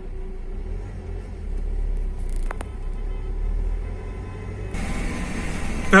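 Low, steady rumble of a car driving, heard from inside the cabin, with a single click about two and a half seconds in. Near the end the sound changes abruptly to a brighter traffic hiss.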